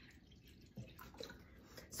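Faint trickle of hydrogen peroxide poured from a plastic bottle into a glass measuring cup.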